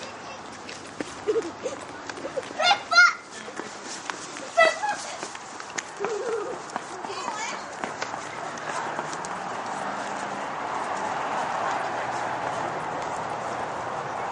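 A child's high voice calls out a few short times in the first five seconds, over scattered light steps and handling noise. From about eight seconds in, a steady outdoor background noise fills in.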